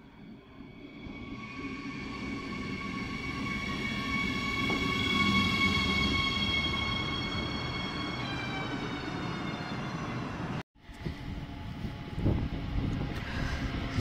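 A double-deck regional train approaches and runs past along the platform: a rumble that grows louder, with a steady high whine of several tones that drops slightly in pitch as the train passes. After a short break, a second train hauled by an electric locomotive is heard approaching, with a rumble and a knock.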